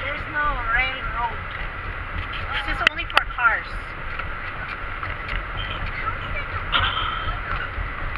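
Steady low road rumble inside a car cabin as it drives through a road tunnel. Indistinct voices are heard about half a second in and again around three seconds, with two sharp clicks near three seconds.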